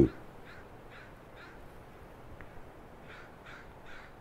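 Crows cawing faintly: two runs of three short caws, one near the start and one near the end.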